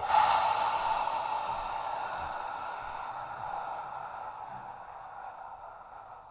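A person's long, slow exhalation, one steady breathy hiss that gradually fades and dies away near the end. It is the long exhale that completes a physiological sigh (cyclic sighing): a double inhale followed by a long exhale.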